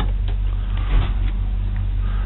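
Steady low electrical hum, with a couple of faint knocks as items are handled in a plastic tote, about a quarter second and a second in.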